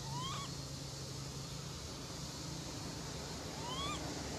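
A baby long-tailed macaque calling twice, one short rising coo just after the start and another near the end, over a steady low hum.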